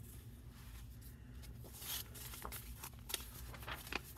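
Faint rustling and handling of paper and picture-book pages, a scattering of short soft rustles and clicks over a steady low room hum.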